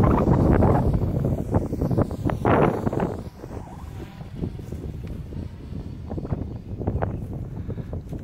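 F450 quadcopter with SunnySky 2212 1400 kV motors and APC 9045 propellers buzzing overhead on a high-speed pass, with wind buffeting the microphone. It is loudest over the first three seconds, then fades and stays fainter.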